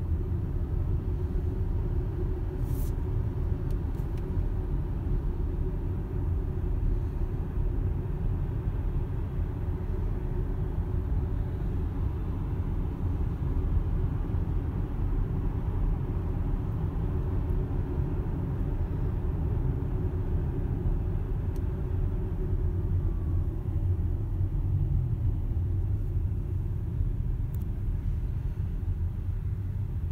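Tyre and road noise heard inside the cabin of an electric Tesla Model X moving slowly in traffic: a steady low rumble with no engine note.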